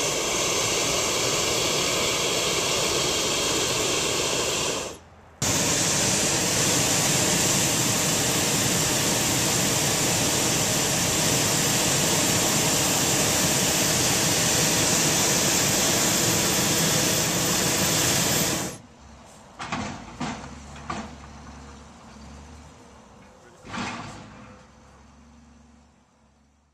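Hot air balloon propane burner firing in two long blasts, about five seconds and then about thirteen seconds, split by a brief break: a loud, steady hissing rush that heats the air in the envelope during a test inflation. After it cuts off, only a few faint knocks remain.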